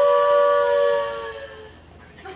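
Two female voices holding the song's long final note in close harmony, fading out about a second and a half in.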